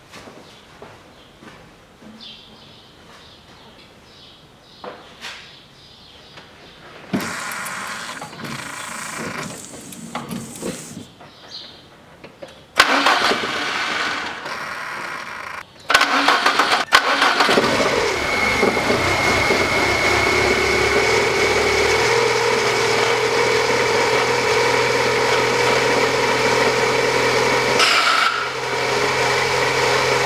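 After a quiet start with faint handling noises, the VAZ-2110's 1.5-litre 16-valve engine is cranked on the starter a little before halfway, catches, and runs at a steady idle with a thin whine over it. The engine is running on a freshly fitted timing belt after the old belt snapped.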